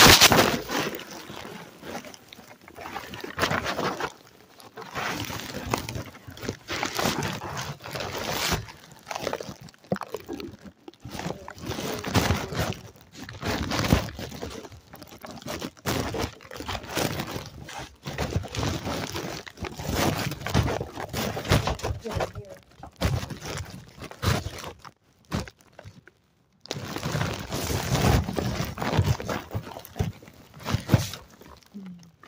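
Indistinct talking, with no clear words, running almost the whole time and dropping out briefly near the end.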